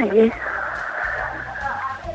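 A telephone caller heard over a narrow phone line: a brief vocal sound at the start, then a steady breathy hiss on the line.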